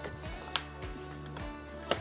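Soft background music with sustained low tones, with two light clicks: a faint one about half a second in and a sharper one near the end as a small wooden block is set against the lead came on the glass.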